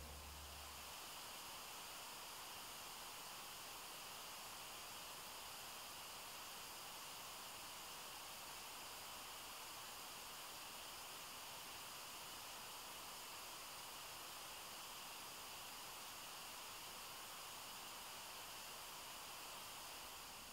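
Faint steady hiss with no distinct sound in it.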